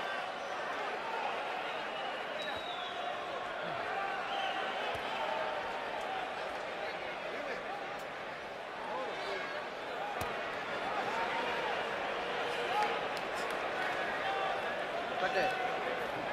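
Arena crowd at a boxing match: a steady din of many voices talking and calling out at once.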